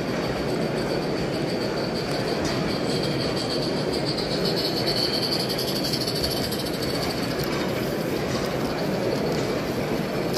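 Radio-controlled live steam garden-railway locomotive running past with its train of carriages, over a steady hubbub of hall noise. A high, thin sound from the passing train swells to its loudest about five seconds in, as the engine is closest, then fades. A few light ticks follow in the later seconds.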